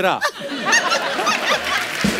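A group of people laughing together, a man's laugh among them, breaking out just after a spoken word ends near the start.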